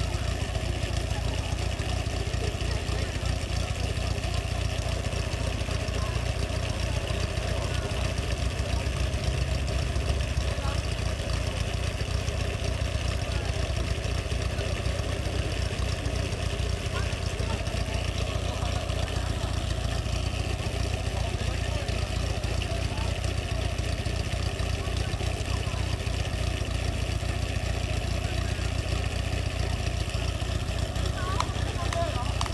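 Portable fire-pump engine idling steadily.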